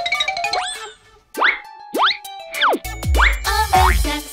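Cartoon sound effects: a series of quick upward slide-whistle-like 'boing' sweeps with a run of plinking notes. About three seconds in, upbeat children's music with a bass beat comes in.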